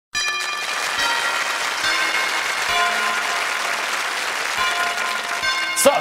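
Audience applauding over music, whose notes and a low beat change about once a second.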